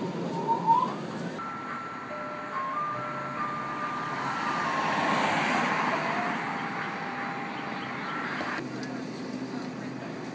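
Ice-cream van chime playing a simple tune of single clear notes, over road noise that swells and fades midway. The tune cuts off suddenly near the end.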